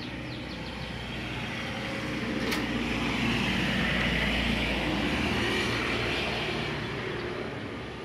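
A road vehicle passing by, its sound swelling to a peak about four seconds in and then fading away.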